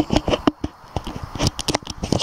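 A filter being fitted onto a lens: a quick, irregular run of small clicks and scrapes from handling close to the microphone.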